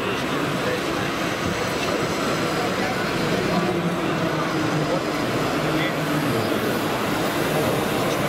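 Steady running noise of radio-controlled model construction vehicles, a wheel loader and trucks, under continuous crowd chatter in a hall.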